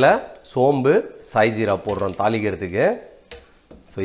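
Speech: a man talking in short phrases.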